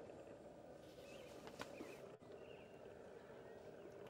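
Near silence: faint outdoor ambience, with a few very faint short high sounds.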